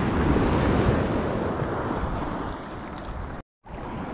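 Shallow Baltic sea water sloshing and waves washing around a wader, with wind noise on the microphone. The sound cuts out completely for a split second about three and a half seconds in, then the water noise returns.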